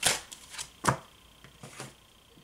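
A deck of oracle cards being shuffled by hand: a few quick, papery strokes of cards against each other. The loudest come at the start and about a second in, and a softer one comes near the end.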